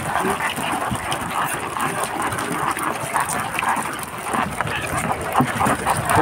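Freshly caught small fish flapping in a boat's fish hold: a dense patter of short slaps and taps over a steady background noise.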